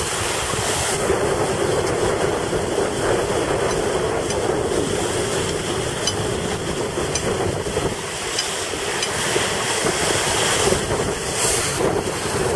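Wind buffeting the microphone over a steady rush of water along the hull of a sailing yacht running under spinnaker.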